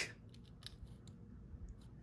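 Faint clicks of half dollar coins shifting against one another in an opened paper roll wrapper as a fingertip pushes the stack apart.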